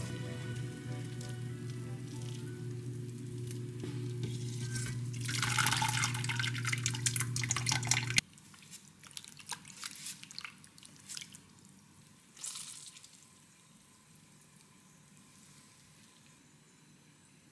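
Water draining and dripping from a perforated stainless steel strainer basket lifted out of a pot of hot water, over soft background music that cuts off abruptly about halfway through. The drips thin out to scattered drops, then it goes quiet.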